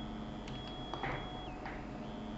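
A few faint, irregular clicks over a low steady hum and a faint, steady high-pitched whine.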